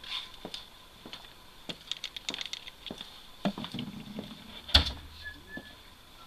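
Light metallic clicks and taps from handling a Colt 1860 Army black-powder percussion revolver as loading begins, with one sharper, louder knock about five seconds in.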